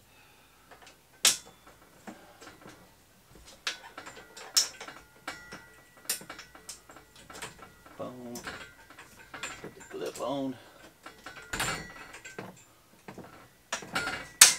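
Irregular handling clicks and knocks of plastic and metal parts as a bike cargo trailer is assembled by hand, with a few sharp clicks, the loudest about a second in.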